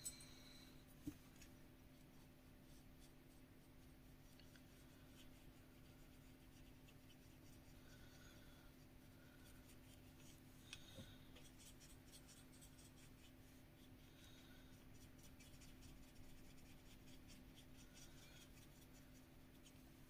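Near silence: a paintbrush making faint, soft strokes on watercolour card, over a low steady room hum, with a couple of light taps.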